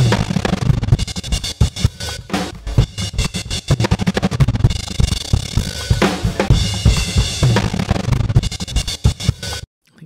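Drum-kit loop played through a harsh, deep tremolo that works as a gate, chopping the beat into fast stuttering slices with a little of the loop left between the chops. The chopping rate is automated to change as it plays, and the playback cuts off just before the end.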